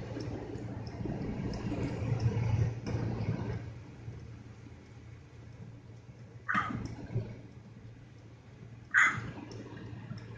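Inside a car moving slowly on a snow-covered road: a steady low hum under a slushy rushing noise of tyres on snow for the first few seconds, which then fades, followed by a few sharp knocks in the cabin in the second half.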